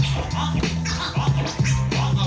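Vinyl record scratched by hand on a Technics SL-1200MK2 turntable: short swipes gliding up and down in pitch several times a second, over a music track with a steady bass line.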